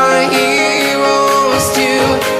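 Background music: a pop song with a sustained, gliding melody.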